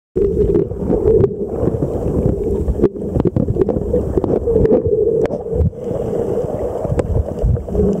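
Muffled underwater water noise picked up by a submerged camera: a steady low rumble with scattered sharp clicks.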